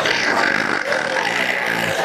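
A man's exaggerated, wordless crying noises into a handheld microphone, turning into a deep, wavering moan in the second half.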